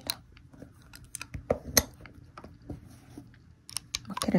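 Light clicks and taps of an oboe being taken apart by hand, its metal keys and wooden joints knocking softly as the lower joint is eased out of the bell. About eight irregular sharp clicks, the sharpest about a second and a half in.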